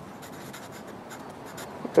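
Felt-tip marker writing a word on lined notebook paper: the tip scratches lightly and steadily across the page.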